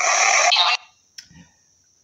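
Static-like hiss from the Necrophonic spirit-box app, played through a phone speaker, that cuts off about three quarters of a second in. A single click follows about a second later, then a faint high steady whine.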